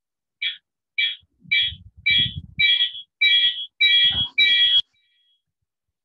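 Electronic alarm beeping in short high-pitched beeps, just under two a second, growing steadily louder, then cutting off suddenly near the end. Some low knocks sound under the last few beeps.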